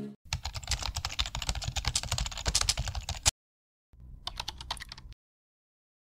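Keyboard typing sound effect: rapid key clicks for about three seconds, a short gap, then about another second of typing. Each run cuts off abruptly.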